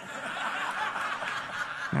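Audience laughing at a joke, the laughter swelling over the two seconds.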